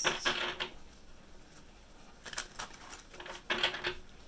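A deck of tarot cards being shuffled by hand: a short burst of rapid card clicks at the start and a longer one from about two seconds in.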